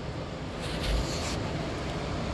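Steady room noise, with a brief rustle or hiss lasting under a second, starting a little over half a second in.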